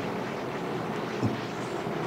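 Steady background noise of the room, an even hiss with no clear pitch. A single brief low sound comes just past the middle.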